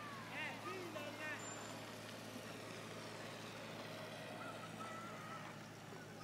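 Faint open-air ambience: a steady low engine-like hum, with faint distant voices and a few quick high chirps about half a second to a second and a half in.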